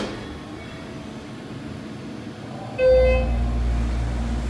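Schindler hydraulic elevator starting upward: near the end a short electronic beep sounds, and the hydraulic pump unit starts suddenly with a steady low hum.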